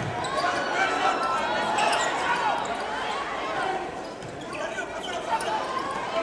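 Indoor volleyball rally: the ball struck with sharp smacks a few times, with sneakers squeaking on the court and players' and spectators' shouts echoing in the arena.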